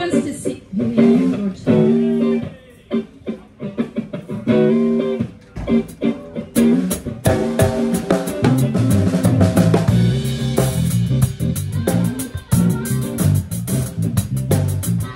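Live band playing the intro of a soul song: electric guitar chords with gaps between them, then the drum kit joins with hi-hat and cymbal strokes about six and a half seconds in and a bass line about two seconds later.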